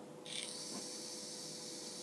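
E-cigarette atomizer hissing steadily during a long draw, as the heated coil vaporises the e-liquid and air is pulled through the device. The hiss begins a moment in.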